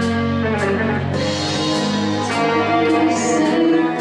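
Live rock band playing: distorted electric guitar and bass over a drum kit with cymbal hits.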